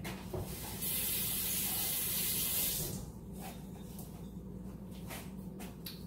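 Kitchen faucet running in a steady stream for about two seconds, then shut off, as seasoning is rinsed off hands.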